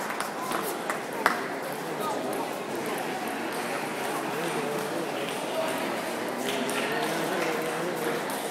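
Busy table tennis hall: a steady murmur of distant voices with the sharp clicks of ping-pong balls off bats and tables nearby, a few clustered about a second in.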